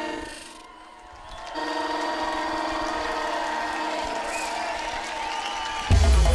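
A breakdown in a live electronic dance-rock song: drums and bass drop out, leaving held synthesizer chords that fade down about a second in and swell back with a sustained high note. The full band with drums and heavy bass comes back in at the very end.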